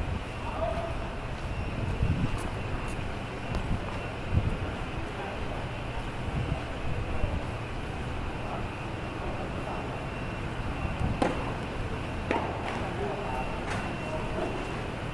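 Steady low hum and background noise on an outdoor clay tennis court, with faint voices. Near the end come three sharp hits one to one and a half seconds apart: tennis balls struck by rackets in a rally.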